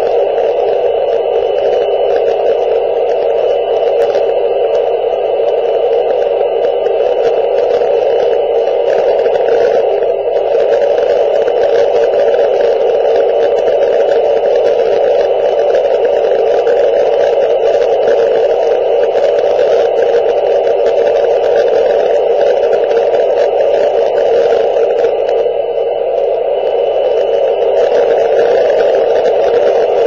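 Steady static hiss from an amateur radio transceiver's speaker with the squelch open and no station coming through: receiver noise while tuned and waiting for the ISS signal.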